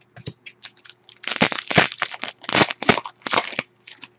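Foil trading-card pack wrapper being torn open and crinkled by hand: a run of short crackling bursts, light at first and louder through the second half.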